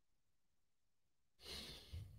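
Near silence, then a man's short sigh, a breath out close on the microphone, about one and a half seconds in.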